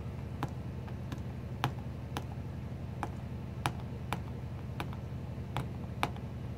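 Paper piercer being pushed through a plastic star piercing guide into silver foil cardstock on a piercing mat, one hole after another: short sharp ticks about two a second.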